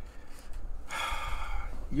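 A man drawing an audible breath through his mouth, lasting about a second, just before he starts speaking again.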